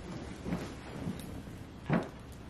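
A person moving about at close range, with soft rustling and handling noises and one dull thump near the end.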